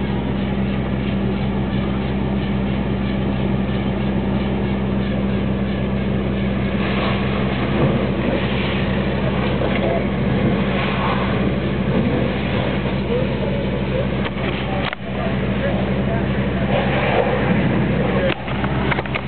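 Steady low hum of an idling engine under a rushing noise, with faint distant voices now and then.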